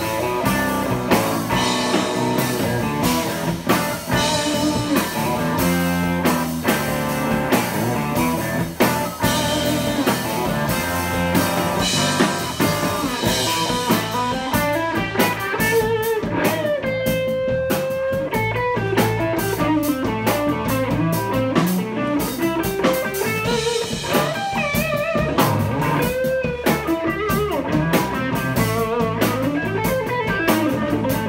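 An instrumental blues played live by an electric guitar, an electric bass and a drum kit. The guitar leads with single-note lines, holds one long note about halfway through, and then plays wavering, bent notes.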